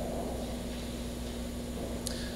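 Steady background hum and hiss of a large room, with a faint steady tone in it; the last echo of a man's voice fades away at the very start.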